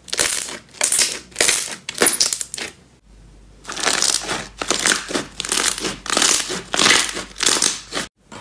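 Thick green slime being pressed and folded by hand, giving a quick series of crackling, squelching pops. There is a short pause about three seconds in, then a denser run of crackles.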